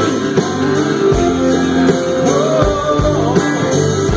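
Live country band playing, led by guitar over bass and drums, with a deep bass note about every second and a half. In the second half a lead line slides up and down in pitch.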